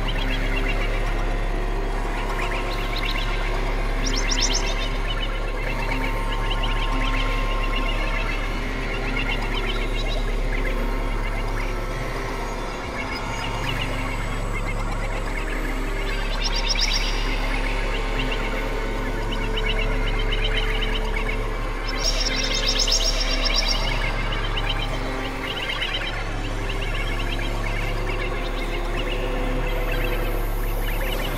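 Experimental synthesizer drone music: a steady low drone under layered sustained tones. Spells of high, fast-warbling tones come and go, about four seconds in, around sixteen seconds, and longest from about 22 to 24 seconds.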